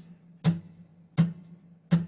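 Acoustic guitar played with three evenly spaced down strums, about 0.7 s apart, each a sharp strike that rings briefly: down strums only, falling on the beat, with no up strums between them.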